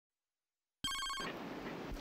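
A phone's electronic ringtone, a fast trill of several high tones, starts suddenly about a second in and is cut off after under half a second as the call is answered. A faint steady hiss of background ambience follows.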